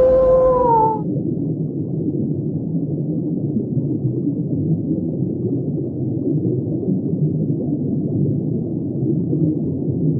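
A long wolf-like howl held on one pitch, dropping and cutting off about a second in. It gives way to a steady, muffled, deep underwater-ambience sound effect.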